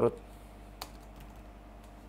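Quiet typing on a computer keyboard: a few keystrokes, one sharper click a little under a second in, over a faint steady hum.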